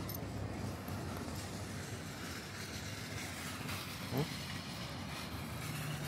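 Steady rumble of road traffic and outdoor ambience, with a brief rising tone about four seconds in.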